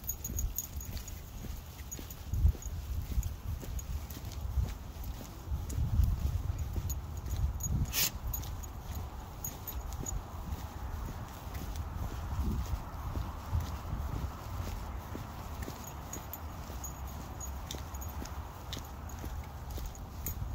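Footsteps of a person and a dog walking on a wet concrete sidewalk, with small irregular clicks, a low rumble on the phone's microphone, and one sharp click about eight seconds in.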